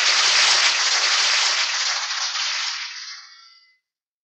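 Audience applause on a live polka recording, fading out smoothly over about three and a half seconds into silence.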